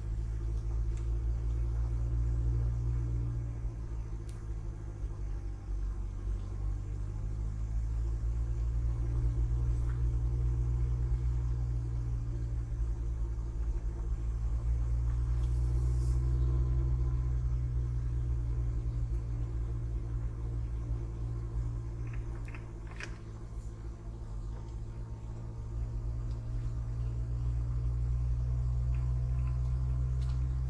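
Low engine and road rumble heard from inside a car driving along a paved road. The engine note rises and falls gently with speed, and a few faint clicks come about three-quarters of the way through.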